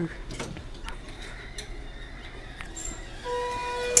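Lift's electronic chime: a steady tone starts about three seconds in, then a sharp click, and it drops to a lower tone.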